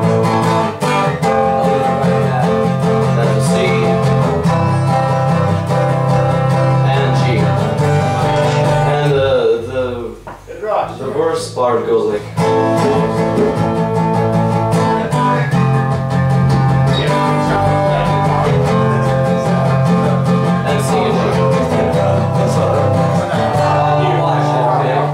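Acoustic guitars strumming a chord progression. About ten seconds in the strumming breaks briefly into sliding, bending notes, then resumes.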